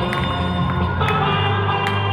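Music with held chords over a low sustained bass note, punctuated by a few sharp percussive hits.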